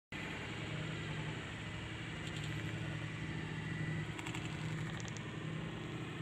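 A motor running steadily with a low, even hum, with a few faint ticks a couple of seconds in.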